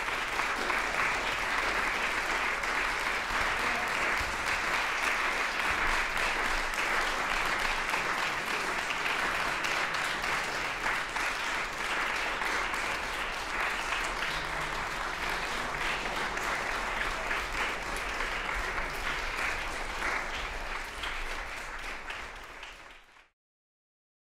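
Concert-hall audience applauding steadily, easing off a little toward the end before it cuts off abruptly.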